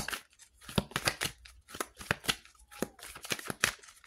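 A tarot deck being shuffled and handled by hand to draw one more card: an irregular run of crisp card snaps and taps, about three a second.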